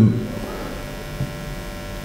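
A man's word trails off, then a pause filled only by a steady faint electrical hum and room tone.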